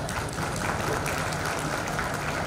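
Audience applauding steadily, a dense patter of many hands clapping.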